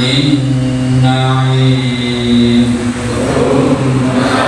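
A man chanting a Quran recitation into a microphone in a slow melodic voice, holding long steady notes with brief breaks between them.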